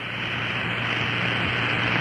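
Steady hiss of a radio broadcast feed, with a faint low hum underneath and nothing else, in a pause between countdown calls.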